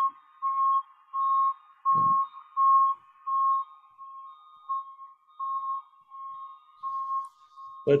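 Electronic beeping: one steady beep repeating about three times every two seconds, growing fainter about halfway through.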